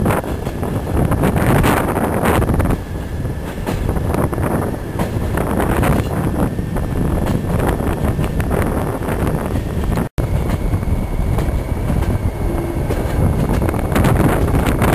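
Passenger train running, heard from on board: a steady rumble of wheels on the rails with many short clicks and wind noise on the microphone. The sound drops out for a moment about ten seconds in and then resumes.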